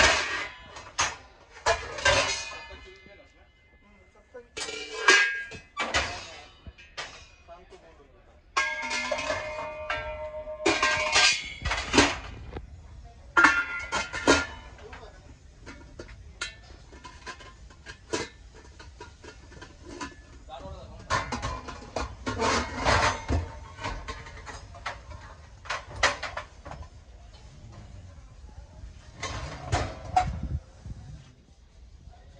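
Hammered brass pots and bowls clinking and knocking against each other as they are lifted and handled, some strikes leaving a short metallic ring.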